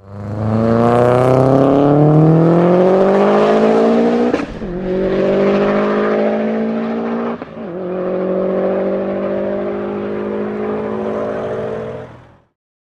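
A car engine accelerating hard, its note rising steadily in pitch, with two quick upshifts about four and a half and seven and a half seconds in, each a brief dip and drop in pitch before it pulls again.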